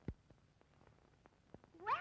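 A single soft thump, then near the end a high-pitched cartoon voice begins, swooping up and down in pitch.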